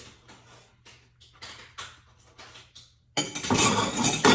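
Light taps and clinks of dishes being handled while washing up, then about three seconds in a sudden, much louder clatter of dishes and cutlery.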